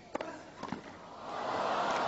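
Two sharp pops of a tennis ball in a rally, about half a second apart, then crowd noise swelling up over the last second.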